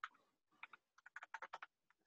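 Faint computer keyboard typing: a quick run of about a dozen keystrokes, starting about half a second in.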